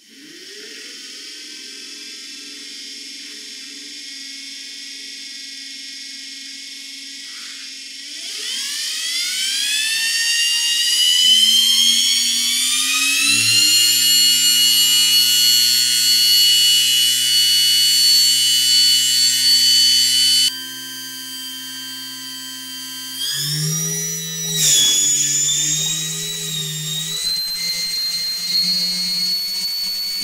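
Ryobi S-550 sander motor, converted to a permanent-magnet DC motor with a rewound armature, running on a bench DC power supply. It starts at once, and its whine rises in pitch as the voltage is turned up, then holds at high speed. After a sudden change about two-thirds in, the pitch shifts again.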